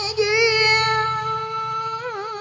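A woman's voice sings a long held note in a Vietnamese tân cổ song. The note wavers at first and then holds steady, over a quiet karaoke backing track.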